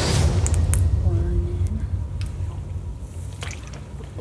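Donut dough frying in a deep fryer's hot oil: the oil bubbles and crackles around it, with a deep rumble at first that fades after a second or so, and scattered sharp pops.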